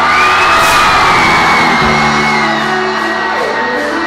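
Live pop-rock band playing, with the crowd cheering and screaming over the music. A long high cry rises at the start and slowly falls away over the next couple of seconds.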